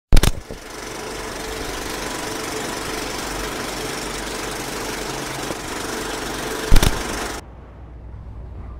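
A steady mechanical whirring noise with a faint hum, framed by a loud click at the start and another near the end, then cutting off suddenly.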